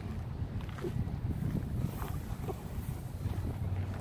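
Wind buffeting the microphone, a steady low rumble, with a few faint clicks.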